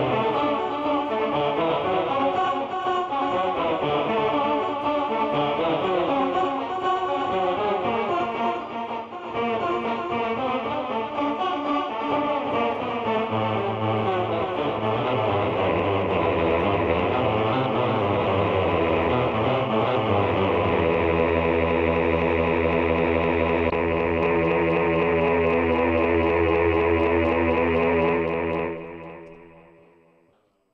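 Electric guitar played through an Electro-Harmonix Mel9 tape replay pedal and a Line 6 HX Stomp with a simple delay. It plays a run of shifting notes, then a held chord that sustains and fades out near the end.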